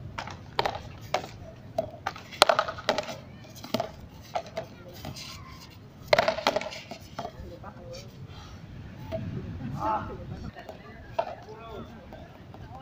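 Frontón rally: sharp knocks, irregularly spaced about every half second to a second, as paddles strike the ball and it rebounds off the concrete wall and court.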